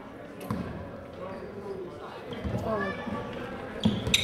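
Basketball bouncing on a hardwood gym floor, a few separate thuds, amid the voices of players and spectators in the gym.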